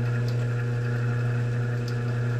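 Benchtop drill press running steadily at its lowest speed, 280 RPM, a constant motor hum, while a carbide-tipped drill bit is forced down onto a hardened steel file. The bit is barely cutting: it is wearing flat instead of going in.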